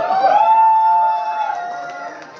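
A voice holding a long, high-pitched cheering call for about a second and a half, dipping slightly at the end, over crowd noise.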